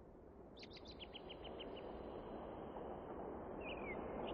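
Birds chirping faintly over a soft outdoor ambience that slowly swells: a quick run of about eight short chirps about a second in, then a single falling call near the end.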